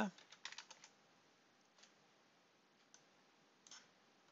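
Faint computer keyboard keystrokes: a quick run of taps about half a second in, then a few single soft clicks spaced out through the rest.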